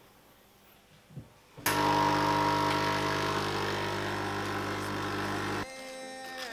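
An electric motor switched on suddenly a little under two seconds in. It runs at one steady pitch with a strong low hum and cuts off abruptly near the end. A faint click comes about a second in.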